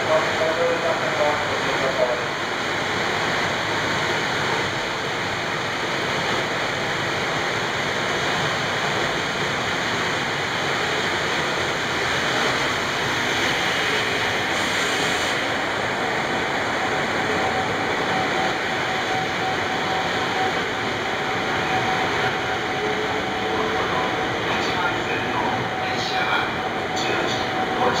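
EF510 electric locomotive hauling 24 series sleeper coaches pulls out of a station and rolls past along the platform: a steady, even running noise of the train, with a faint steady tone coming in about halfway through.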